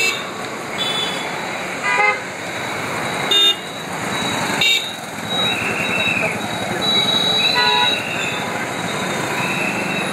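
Several short car-horn toots, the loudest about two, three and a half and five seconds in and another near eight seconds, over a steady din of traffic and crowd voices.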